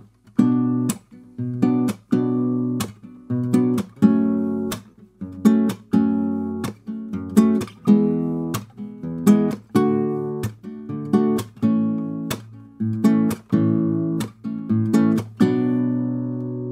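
Acoustic guitar fingerpicking a B minor – F♯ minor – E – D – A chord progression in open position. The thumb plays the root on a bass string and three fingers pluck the treble strings together, in a steady rhythm of about two chord strokes a second. The last chord is left ringing near the end.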